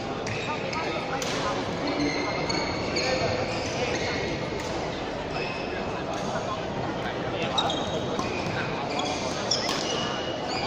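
Badminton doubles play on an indoor court: short high squeaks of court shoes on the floor, then a few sharp racket hits on the shuttlecock in the second half, over background chatter in the hall.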